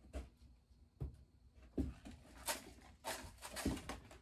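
Scattered light knocks and rustles of plastic cups, a seedling tray and potting soil being handled while seedlings are transplanted.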